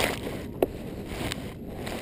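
Dry hay rustling and scraping as it is packed into a plastic-pipe feeder, with a sharp knock a little over half a second in.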